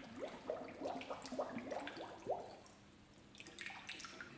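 Plastic sample bottle filling under hot tub water, faintly gurgling as air escapes in a quick run of short rising bubble blips that die away about two and a half seconds in.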